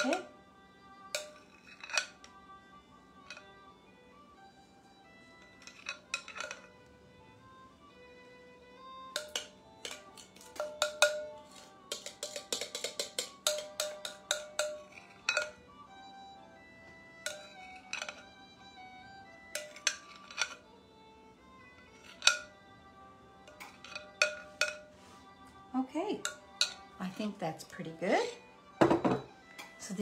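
Metal spoon clinking and scraping against a glass mixing bowl while cheesecake batter is spooned into paper-lined muffin cups: irregular sharp clinks, some ringing briefly, with busier runs of clinks in the middle.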